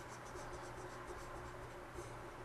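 Faint, quick back-and-forth scratching of a stylus rubbed over a drawing tablet while erasing, over a steady low hum.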